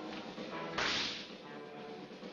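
A single sharp swishing smack about three quarters of a second in: a fight sound effect for a blow landing, over background music.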